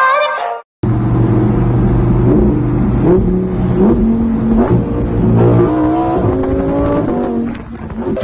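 Lamborghini supercar engine accelerating on the road, its pitch climbing in steps. It is heard from the open cockpit with the roof down.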